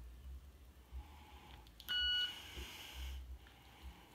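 A single short electronic beep from a Victor Reader Stream, about two seconds in, followed by a second of faint hiss, during a factory reset.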